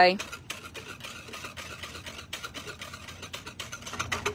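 A whisk stirring cornstarch into water in a plastic pitcher: light, irregular clicking and scraping against the pitcher's sides with liquid swishing.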